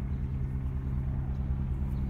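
Steady low engine drone with a fast, even pulse underneath, as of an engine idling.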